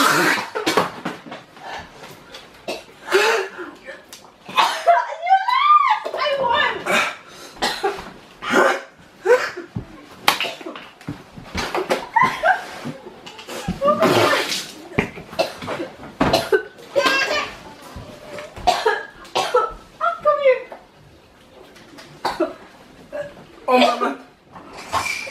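A man's wordless pained vocal sounds: repeated sharp breaths, groans and coughs, with one rising-and-falling wail about five seconds in. This is a reaction to the burn of an extremely hot chili chip.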